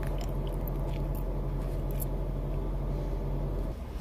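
Steady low drone of a car cabin on the move, with faint scattered clicks and rustles from a phone being handled. The drone cuts off abruptly near the end.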